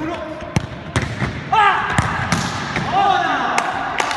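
A futsal ball being kicked and bouncing on a wooden sports-hall floor, a string of sharp knocks, with loud shouts about a second and a half in and again near three seconds.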